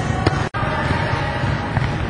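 Gym din from a volleyball ball-control drill: many irregular thuds of balls being struck and bouncing over a dense low rumble. It cuts out for an instant about half a second in.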